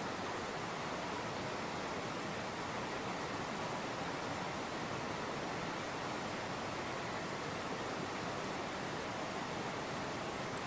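A steady, even hiss of noise with no change and no other sound in it.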